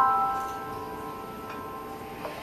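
Live piano accompaniment: a chord struck right at the start rings on and slowly fades away.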